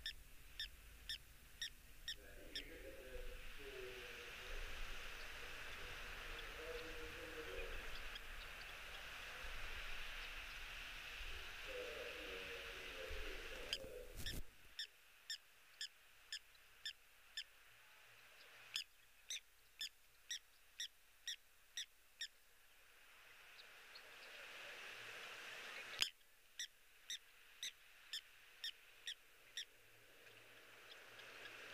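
Animal calls in the evening: runs of sharp clicks at about two a second, with low hoot-like calls in the first half. Wind rumble is heard until it cuts off suddenly about halfway through, and there is one louder click near the end.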